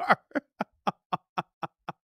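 A man laughing into a close microphone: a long run of short, even laugh pulses, about four a second, slowly growing fainter.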